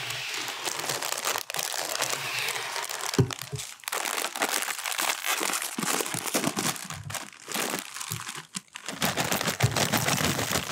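A plastic Cheetos snack bag crinkling as it is squeezed and pulled open close to the microphone. Near the end, a clattering rustle comes in as the Cheetos start pouring into a glass bowl.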